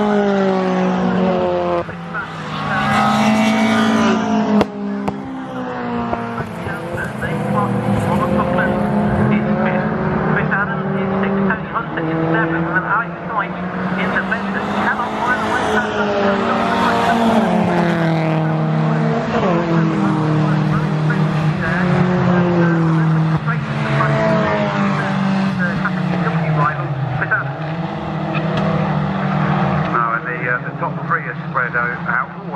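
Engines of a pack of racing hatchbacks, Peugeot 206 GTis among them, driving through a corner: several engines overlap, their pitch dropping and rising again and again as the cars pass one after another.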